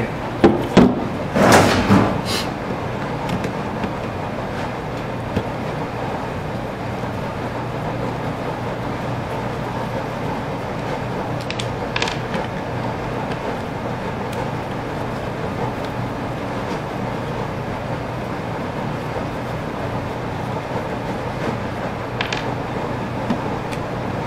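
A few clicks and knocks from hand tools, a folding hex-key set and a screwdriver, working at the cord entry of a DeWalt angle grinder. The clicks are loudest in the first two seconds, then come singly now and then, over a steady background hum.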